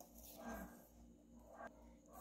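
Near silence, with faint soft scraping from a wire whisk stirring powdered milk into cream in a stainless steel bowl.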